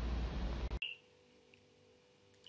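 Room tone with a low hum, cutting off abruptly less than a second in to near silence with only a faint steady tone.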